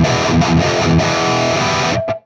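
Heavily distorted electric guitar through a boosted Peavey 5150 tube amp head, heard from a close-miked Vintage 30 speaker, playing a chugging metal riff that settles into a held chord about a second in.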